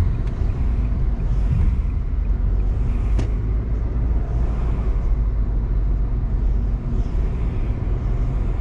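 Steady low rumble of a car being driven through city traffic, engine and tyre noise, with one brief click about three seconds in.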